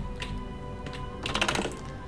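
Computer keyboard keys clicking: a single click just after the start, then a quick run of clicks about a second and a half in.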